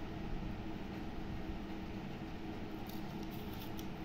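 Quiet room noise with a steady low hum, and a few faint light clicks near the end.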